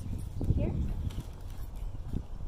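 Dull knocks on cardboard as a canvas painting is set down in a cardboard box and handled, with one thump about half a second in and a few lighter knocks near the end.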